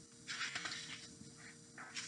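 Faint rustling of a paperback picture book being handled and turned, in a few short brushes of paper.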